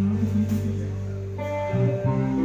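Live band music: an electric guitar chord rings over a held bass note between sung lines, fading slightly before a new chord comes in near the end.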